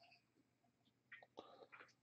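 Near silence, with a little faint whispered speech from about a second in.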